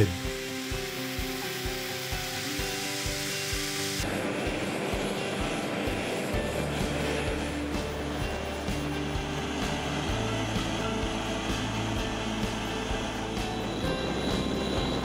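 Steady hiss of a flame heating the wire-wrapped tool-steel axle red-hot for quench hardening, cutting off abruptly about four seconds in, over background music that continues throughout.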